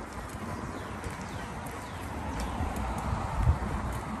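Bicycle riding along a paved path: low rumble of the tyres with a repeated clicking knock from the bike, and one louder thump about three and a half seconds in.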